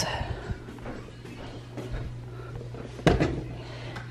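Kitchen drawer pulled open, with a sharp knock about three seconds in, after a few small handling clicks. A steady low hum runs underneath.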